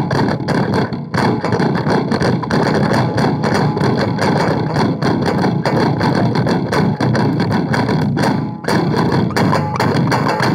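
Electric guitar played with very fast, frantic picking through distortion, making a dense, noisy wall of clattering notes with a brief dip about eight and a half seconds in.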